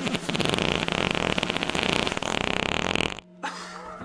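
A long, buzzing fart noise lasting about three seconds that cuts off suddenly, followed by a faint low hum.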